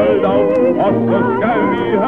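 Music from an old 1930s revue song recording, thin and muffled, with several wavering vibrato melody lines sounding together.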